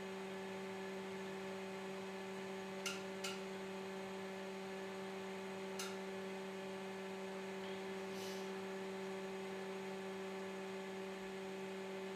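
Tektronix TDS754D oscilloscope running while it reboots through its self-test: a steady hum with a few faint clicks.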